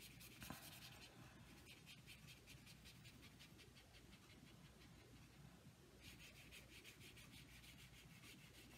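Faint, scratchy swishing of a water brush swept back and forth over watercolor paper in quick repeated strokes, blending a wet ink wash.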